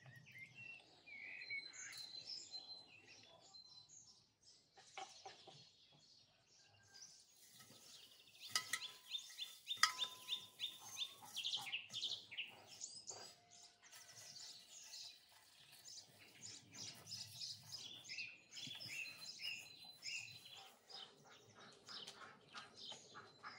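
Birds chirping and trilling, busiest in the middle and again near the end, with a chicken clucking.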